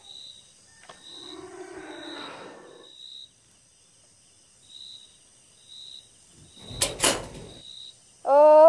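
Night-time background with a cricket chirping about once a second. There is a soft, hazy sound between about one and three seconds in, and a short, loud, sharp noise about seven seconds in.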